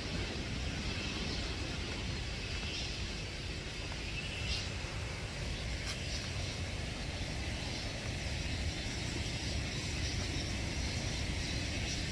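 Steady outdoor noise of rain falling on an open umbrella: an even hiss with a constant low rumble underneath and a few faint ticks.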